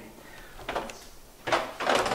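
Refrigerator door opened and things inside handled: a faint click, then two sharp knocks about a second and a half in.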